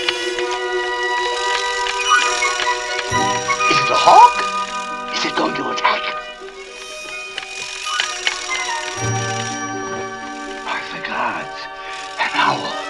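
Orchestral film score with sustained chords, broken several times by a mechanical owl's short warbling chirps and clicks, the loudest about four seconds in.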